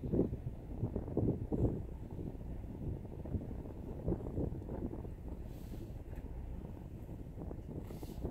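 Wind buffeting a phone's microphone outdoors at night: a low, uneven rumble that rises and falls in gusts.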